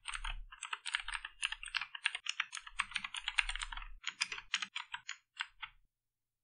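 Typing on a computer keyboard: a quick, dense run of keystrokes with a few short pauses, stopping shortly before the end.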